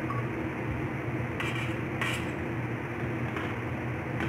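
Metal spoons handling potato balls in a plastic bowl of beaten egg, giving a couple of faint clicks about one and a half and two seconds in, over a steady low room hum.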